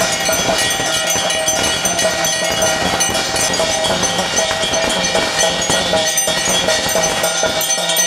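Temple bells ringing continuously over fast, even beats of ritual percussion, the kind played during the aarti of a Naga puja.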